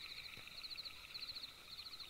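Faint background night ambience of chirping insects: thin high-pitched pulsed trills, with two short bursts standing out.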